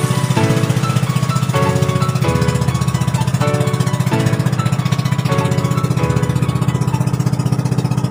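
A motorized outrigger boat's engine running steadily with a fast, even pulse as the boat cruises, with background music playing over it.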